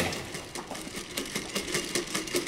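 Electric torque-controlled quadruped robot dog walking on a hard lab floor: a rapid run of clicks from its feet and leg motors. It is quite a noisy machine.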